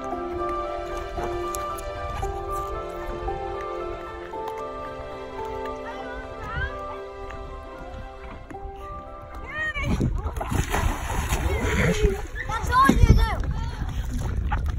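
Background music with held notes for about the first nine seconds, then it stops. After that comes water sloshing and splashing around a stand-up paddleboard as a rider gets down onto it, with short excited voices. A louder splash comes near the end.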